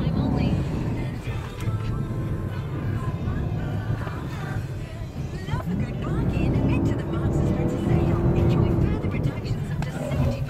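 Cabin noise of a 4x4 driving over sand dunes: a steady low engine and tyre rumble heard from inside the vehicle, with music and faint voices behind it.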